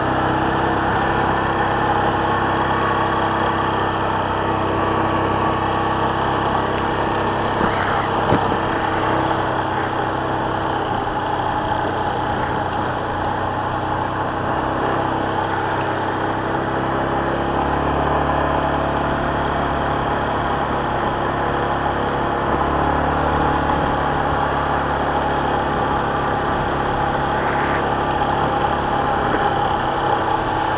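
2018 Yamaha Kodiak 450 ATV's single-cylinder engine running steadily as the quad is ridden along, its pitch shifting a little about 18 seconds in and again around 23 seconds.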